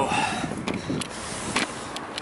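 Camera handling noise as the camera is picked up: a few soft clicks and knocks over a steady background hiss.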